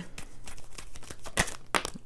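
A tarot deck being shuffled by hand: a quick run of soft card flicks and clicks, with a few sharper snaps near the end.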